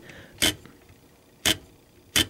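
Two sharp mechanical clicks about a second apart from the carriage mechanism of a 1930s Underwood typewriter as it is handled.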